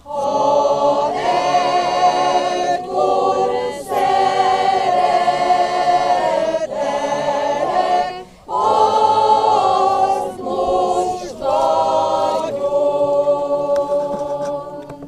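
A mixed choir of men and women singing a funeral hymn a cappella in Hungarian, in long held phrases with short breaks between lines, one about eight seconds in.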